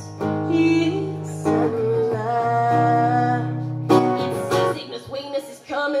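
Live female vocal holding long sung notes over a strummed acoustic guitar. There are two sharper strums, about a second and a half in and again about four seconds in.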